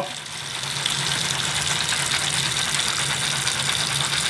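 Soapy hands being scrubbed together with a loofah over a bathroom sink: a steady wet rubbing hiss, with a constant low hum underneath.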